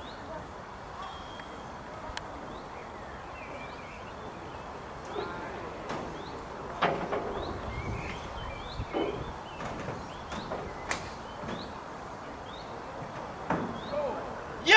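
Outdoor ambience with birds chirping now and then. A few light knocks and faint voices come through.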